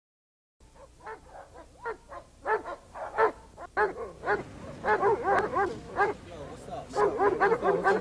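Dogs barking: short barks, sparse at first, then denser and louder, with barks overlapping from about halfway through, as from several dogs.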